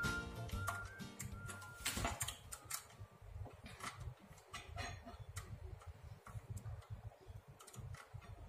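Faint, irregular clicking and ticking from a safe's mechanical combination lock as its wheels are turned by hand and lined up, with the lock's back cover off. Background music fades out in the first two seconds.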